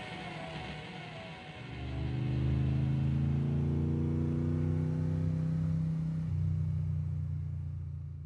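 The song's music dies away. Under two seconds in, a low steady drone takes over, its upper overtones slowly rising. The drone shifts about six seconds in and carries on.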